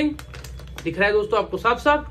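A man talking, with a few short crackles from a plastic snack packet being pressed and handled during the first half-second.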